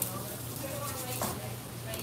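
Faint background voices of other people talking in a diner, over a steady low hum, with one short sharp clink a little past a second in.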